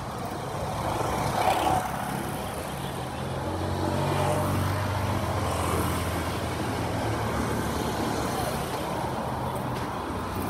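Busy street traffic: motor vehicles running past, with one engine's low drone building about three and a half seconds in and fading away near the end.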